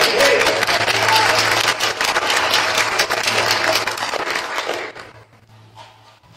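Congregation clapping after a song, a dense patter of many hands that dies away about five seconds in, over a steady low hum that stops near the end.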